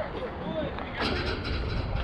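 Indistinct voices calling out over a low, steady rumble, which grows a little noisier about a second in.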